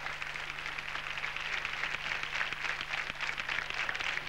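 Studio audience applauding: a dense, steady patter of many hands clapping.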